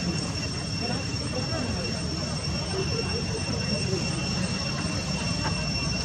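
A steady high-pitched whine with a fainter tone above it, held without change, over a continuous low rumble and faint distant voices.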